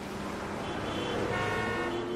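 Electronic sound effect of a glitch-style logo intro: a steady noisy hum, with faint held tones coming in about halfway and a low tone gliding slightly upward.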